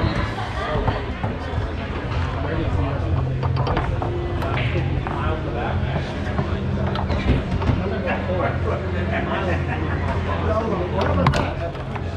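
Foosball match in play: the hard ball clacking off the plastic men and the table walls in scattered sharp knocks, over a steady low hum and background voices.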